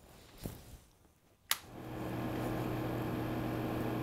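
A sharp click, then the Elegoo OrangeStorm Giga's cooling fans spin up within about half a second and run with a steady whoosh and hum. They are a little loud: they cool the printer's five power supplies, four for the bed and one for the rest of the machine.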